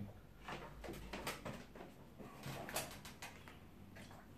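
Faint scattered taps and rustles of hands handling watercolour paper pressed flat against a wooden board.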